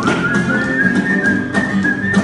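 Nylon-string classical guitar strummed in a steady rhythm, with a melody whistled over it in a high, thin tone that steps between notes.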